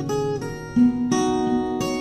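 Steel-string acoustic guitar played alone, its chords struck about five times and left ringing.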